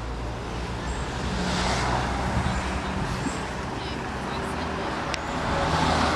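Road traffic on the bridge: car engines and tyre noise, swelling as a vehicle passes about two seconds in and again as another approaches near the end.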